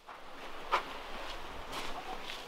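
A man stepping in through a greenhouse door: one sharp click about three quarters of a second in and a few fainter ticks, over a steady low hiss.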